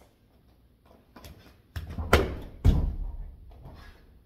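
A gymnast's round-off twist on a home floor: a few light footfalls, then two heavy thuds about two seconds in and shortly after, as hands and then feet strike down, the second being the landing.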